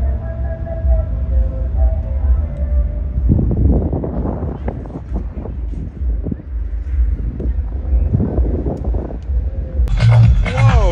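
Outdoor festival ambience dominated by a steady, pulsing low rumble of distant amplified music's bass. About three seconds in, a rougher rustling noise joins over it.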